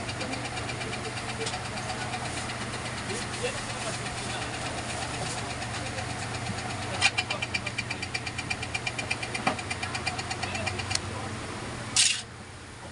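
A reassembled ceiling fan motor running on a bench test, its housing spinning with a steady low electrical hum. About seven seconds in, a light regular ticking of about five ticks a second grows louder over the hum.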